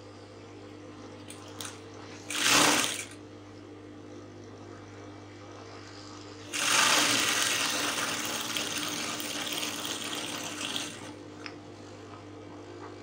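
Industrial sewing machine stitching a corset's side seam: the motor hums steadily, with a short burst of stitching about two and a half seconds in and a longer run from about six and a half seconds that fades out over some four seconds.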